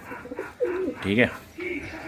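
Domestic pigeons cooing: a low, wavering coo about half a second in and another near the end. The cooing comes from a cock driving a hen toward the nest to lay.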